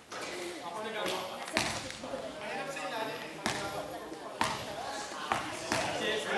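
A basketball bouncing on a gym floor, four sharp thuds about a second apart, ringing in a large hall under people talking.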